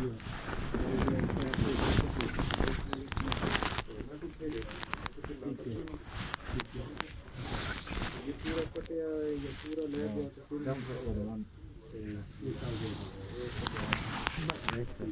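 Muffled, indistinct voices mixed with rustling, scraping handling noise and bursts of hiss, as from a covered or pocketed phone microphone rubbing against fabric or fingers.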